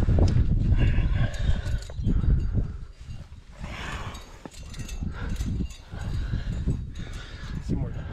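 Low rumble of wind buffeting the microphone for about the first two seconds, then the scuffs and light clinks of a climber moving over sandstone, hands scraping the rock and carabiners on the harness knocking together.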